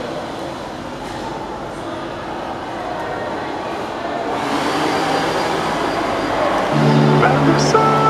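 Indistinct background voices and noise of a busy indoor public space, growing steadily louder. Music with held notes comes in about seven seconds in.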